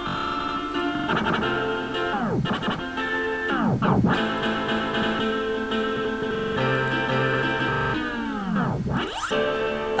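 A synth chord pattern played through FL Studio's Gross Beat time-effect presets. Its pitch dives down and snaps back several times, with a long slide down near the end, like a record slowing and jamming.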